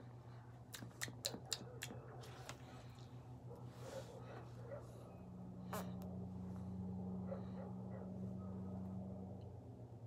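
Faint mouth clicks and lip smacks from puffing on a cigar, with a soft breathy exhale about four seconds in. From about five seconds a steady low hum sets in and stops shortly before the end.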